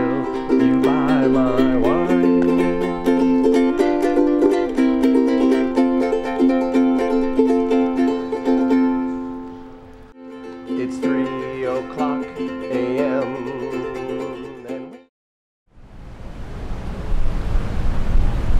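Strummed ukulele music with a wavering melody line over it. It fades about nine seconds in, starts again a second later and cuts off abruptly about fifteen seconds in. After a moment's silence comes a steady noisy rumble.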